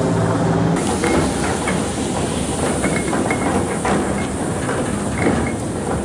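Tear gas canisters hissing steadily as they pour out gas, the hiss filling in about a second in as a low hum drops away, with scattered short clicks and knocks.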